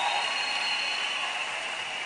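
Congregation applauding, the clapping easing off slightly.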